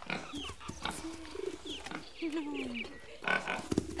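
A small pig grunting in a run of short calls that rise and fall in pitch.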